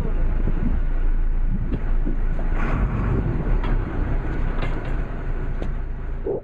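Steady low rumble of a boat's engine running.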